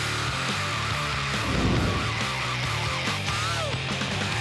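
Background music with a driving, stepping bass line.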